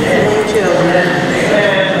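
High-pitched human voices, with drawn-out bending pitch lines.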